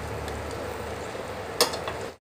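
Egg paratha frying in butter in a pan, a steady sizzle, with a metal spatula pressing on it and one sharp knock of the spatula against the pan about one and a half seconds in.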